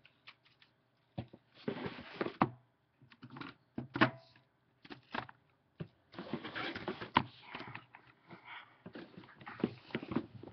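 Items being handled and packed into a cardboard shipping box: bursts of rustling and scraping with irregular knocks and clicks, the sharpest knock about four seconds in.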